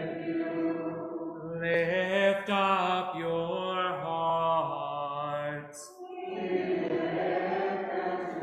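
Chanted call-and-response of a church liturgy: a congregation sings a response, then a single man's voice chants a phrase on a few held, stepping notes, and the congregation sings its reply again near the end. It is the sung opening dialogue of the communion prayer.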